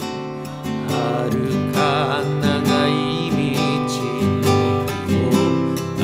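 Nylon-string classical guitar played fingerstyle, picking out arpeggiated chords (Em7, F, C) in a steady flowing pattern.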